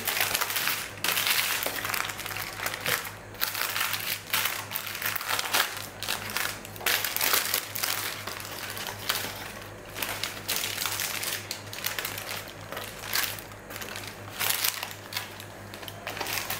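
Parchment baking paper crinkling and rustling in irregular bursts as it is handled around a baked cheesecake.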